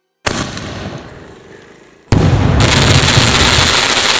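Single-shot aerial firework tube firing its shell: a sudden launch bang a moment in that fades away, then the shell bursts about two seconds in into a loud, sustained crackling of gold crackle stars.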